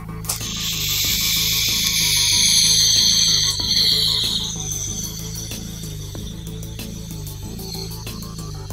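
Steady hiss of a long draw through a vape atomizer as the Lotus LE80 box mod fires its coil, loudest for the first four seconds or so, then fainter as the pull goes on. The mod has no 10-second cutoff, so the hit lasts as long as the lungs can hold. Background music plays throughout.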